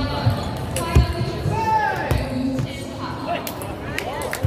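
Table tennis hall din: celluloid-type ping-pong balls clicking off tables and rackets at many tables, with a few dull thumps and a background hubbub of voices.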